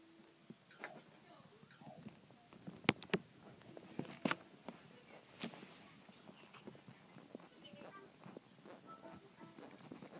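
Remote-control BB-8 toy droid rolling on carpet: faint short high electronic beeps and chirps, with scattered light clicks and knocks from the toy's movement, the loudest about three and four seconds in.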